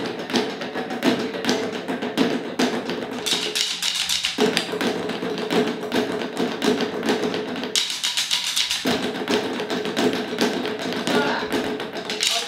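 Several players beating old rubber car tyres with wooden sticks, a fast, dense rhythm of stick strokes that shifts pattern about four and eight seconds in.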